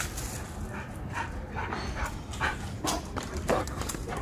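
A dog panting close by, short breaths coming about twice a second.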